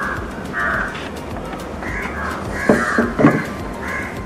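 A bird calling outdoors: a string of short calls, irregularly spaced and more frequent and louder in the second half.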